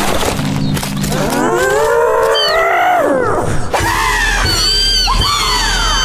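Cartoon chickens squawking. About a second in, one long cry rises and falls, then a flurry of short, high squawks follows, over background music.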